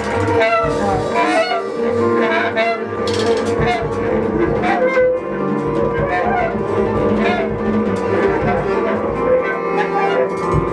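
Live jazz ensemble playing: a woman singing with a bass clarinet holding long notes, over guitar, bass and drums.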